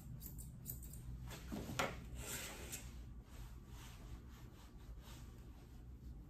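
Grooming shears snipping quickly through a toy poodle puppy's coat in the first second, then a brief louder rustle of hands or tool against the fur just under two seconds in, followed by faint handling sounds.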